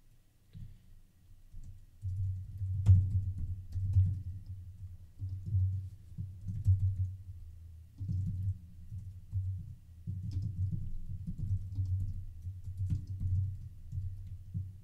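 Typing on a computer keyboard: a quick, irregular run of keystrokes heard mostly as dull low thumps, with a few sharper clicks, getting going about two seconds in.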